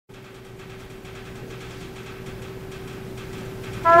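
A faint single steady tone over hall noise, growing slowly louder, then near the end a high school jazz band's horn section comes in loudly on a sustained chord.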